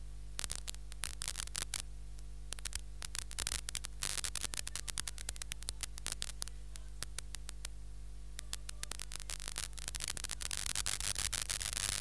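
Steady electrical mains hum in the audio feed, with irregular bursts of crackling static starting about half a second in and growing denser near the end.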